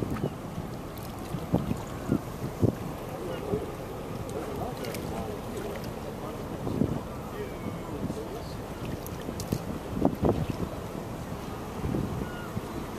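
Low, steady rumble of a slow-moving general cargo ship's engine, with wind buffeting the microphone in irregular gusts.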